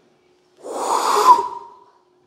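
A man's loud, breathy exhale close to the microphone, starting about half a second in and lasting about a second, with a thin whistle-like tone toward its end.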